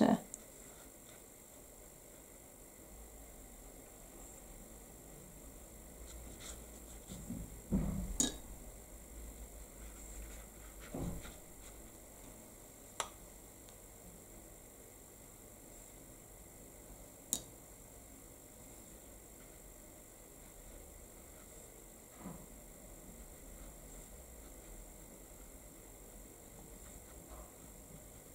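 Quiet desk room tone while a paintbrush works watercolour on card, broken by a handful of isolated sharp clicks and soft low knocks from tools being handled on the desk, the loudest about eight seconds in.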